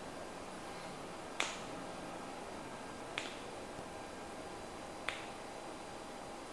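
Toe joints popping as a chiropractor manipulates a patient's toes one by one: three short, sharp clicks about two seconds apart.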